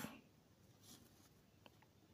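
Faint scratching of a pen on paper as a square-root sign is drawn: a short stroke about a second in, then a few light ticks near the end.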